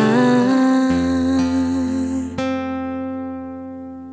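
Acoustic cover song ending: a female voice holds a final sung note over acoustic guitar, then about two and a half seconds in a last guitar chord is struck and rings out, slowly fading.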